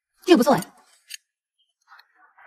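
A brief voice sound, about half a second long, followed about a second in by a short, high click.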